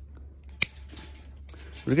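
Pruning shears cutting through a strand of thick (4 mm) plastic mesh: one sharp snip about a third of the way in, with a few faint clicks of the blades around it.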